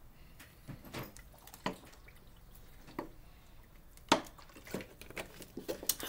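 A person sipping and swallowing water, with scattered small clicks and knocks as the drink is handled; the sharpest knock comes about four seconds in.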